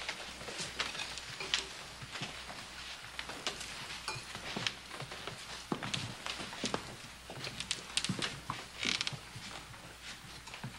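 Footsteps and shuffling of a group of people walking out across a room, a steady jumble of irregular knocks and clicks.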